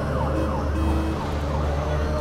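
Ambulance siren yelping: a quick falling sweep repeated about three times a second, over a steady low hum of street traffic.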